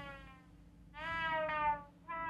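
Korg Volca Keys analogue synthesizer sounding single notes, their filter cutoff moved from a remapped controller slider. One note fades out at the start and another sounds about a second in for just under a second, each sliding slightly down in pitch.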